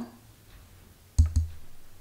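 Two quick taps on a microphone about a second in, each a sharp click with a low thump, the usual check of whether the mic is live.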